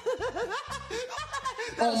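A man laughing in a run of short, evenly spaced ha-ha pulses, about four a second, with music underneath.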